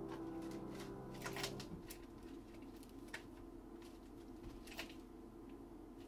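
The last held piano chord of an improvisation dies away and stops a little under two seconds in, leaving faint scattered clicks and taps.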